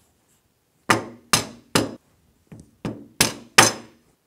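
Seven mallet taps on a wood block held against an aluminium screen-window frame, knocking the top section of the frame off its stamped corner keys. They come in a group of three, a short pause, then four more, the last two the loudest.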